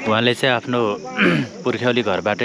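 A man talking close by, with a faint steady high-pitched chirring of insects underneath.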